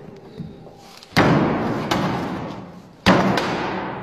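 Two heavy thuds about two seconds apart, each ringing on and fading over a second or more: a boot striking loaves of bread that have gone hard as bricks against a wooden bench.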